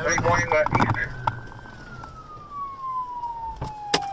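Police siren wailing: one slow falling sweep of about three seconds, starting to rise again at the very end. Two sharp clicks come near the end.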